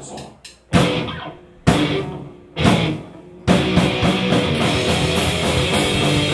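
Live punk band starting a song: a few sharp clicks, then three loud hits from drums, distorted electric guitars and bass about a second apart, each left to ring out, before the full band kicks in and plays steadily.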